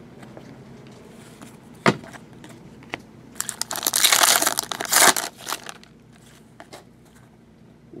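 A plastic trading-card pack wrapper being torn open and crinkled by hand for about two seconds, midway through. A single sharp tap comes a little before it.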